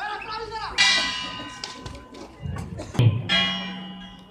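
Boxing ring bell struck twice, about two and a half seconds apart, each strike ringing and fading; it marks the end of the round as the referee steps between the boxers. A dull thump comes just before the second strike.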